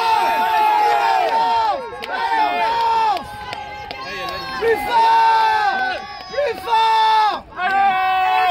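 Several people shouting drawn-out encouragement to a rowing crew. The overlapping calls are held and each falls in pitch at its end, with a brief break near the end.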